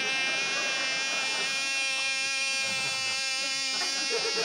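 Groan tubes sounding together as a steady, buzzy chord of several held tones; a lower tone stops near the end.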